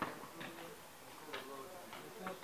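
Faint, indistinct voices of people talking, in short phrases with gaps between them.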